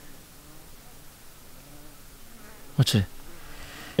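A flying insect buzzing faintly, its pitch wavering, followed by a short spoken word about three seconds in.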